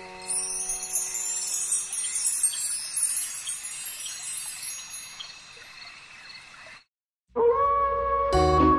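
Wind chimes tinkling in a high, glittering shimmer over the last held notes of a lullaby, then fading away over several seconds. After a brief silence, new music starts near the end.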